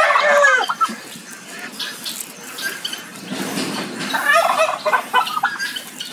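Mixed poultry and fowl calling: a burst of calls in the first second and another group of calls about four seconds in.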